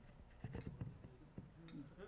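Quiet pause in a live recording: faint room tone with a handful of soft, short clicks in the middle.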